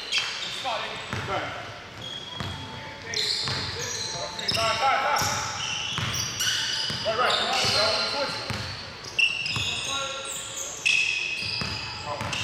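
Basketball being dribbled on a hardwood gym floor, with many short, high-pitched sneaker squeaks and indistinct shouts from players, all echoing in a large gym.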